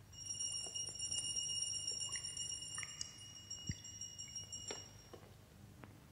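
A bell ringing steadily, a high clear ring with several overtones, for about five seconds before it fades out, with a few soft clicks and one dull knock.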